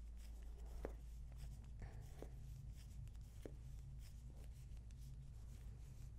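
Bamboo knitting needles clicking faintly and yarn rubbing as stitches are purled, a few light taps about a second apart over a low steady hum.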